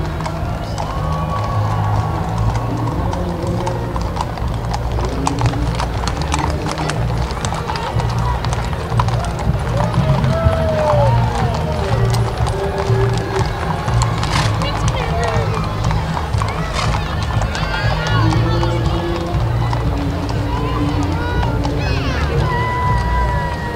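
Horses' hooves clip-clopping on brick pavement as a line of mounted riders passes, with music playing underneath.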